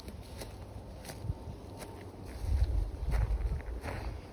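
Footsteps on grass, about one step every 0.7 s, over a low wind rumble on the phone's microphone that grows louder in the second half.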